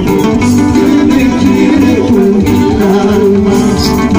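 Loud live Andean band music, with plucked guitar lines over a steady dance beat.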